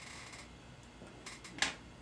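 Quiet handling of small metal fly-tying tools at a vise, with one short, sharp click about one and a half seconds in.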